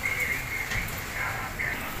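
Low, steady background noise of a workshop with a faint high-pitched tone, and no distinct mechanical event.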